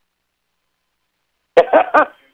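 Silence, then near the end a short cough in three quick bursts.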